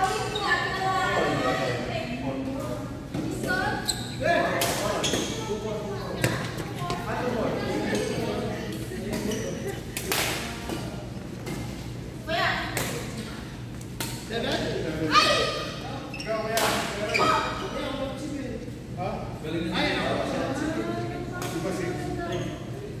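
Badminton rackets hitting a shuttlecock in a doubles rally, with sharp hits at irregular intervals, echoing in a large gym hall. Players' voices talk and call throughout.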